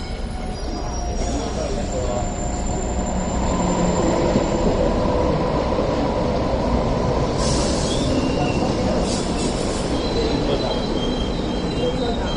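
A Hong Kong Light Rail train approaches and passes close by, its rumble on the rails growing louder over the first few seconds and then holding steady. There are brief hissing bursts about two-thirds of the way through, and thin high squealing tones near the end.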